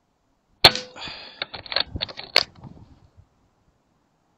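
A .177 Reximex Regime PCP air rifle fires a single shot about half a second in, a sharp crack with a short ringing tail. Over the next two seconds come a string of metallic clicks and rattles, ending in a second sharp click.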